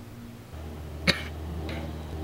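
A boy coughing on cigarette smoke after a drag, one sharp cough about halfway through and a weaker one soon after.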